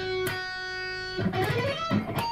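Electric guitar played single-note: one note held for about a second, then a quick run of notes climbing in pitch.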